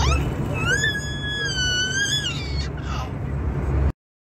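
A baby's long high-pitched squeal lasting about a second and a half, rising, holding, then falling, over the steady drone of an airliner cabin. All sound cuts off abruptly just before the end.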